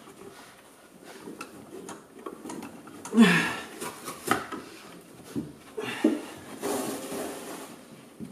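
Old felt floor lining of a car cabin being pulled up and crumpled by gloved hands: rustling and tearing, with short bursts about three and four seconds in and a longer rustle near the end.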